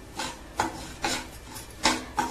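Steel spoon scraping and stirring semolina around a metal frying pan, four rasping strokes in the two seconds, as the rava is roasted toward golden.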